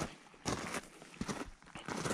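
Footsteps crunching on loose desert gravel: several irregular steps while walking along a dry wash.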